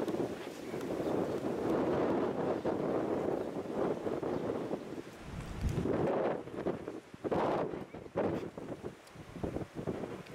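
Wind buffeting the microphone: a steady rush for the first five seconds or so, then uneven gusts.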